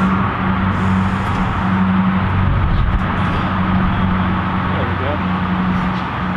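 A car engine idling steadily with an even, low hum, and voices faint in the background.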